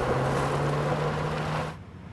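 Silverado pickup truck ploughing through mud and water: a loud rush of splashing spray over the steady note of its engine, cutting off suddenly near the end.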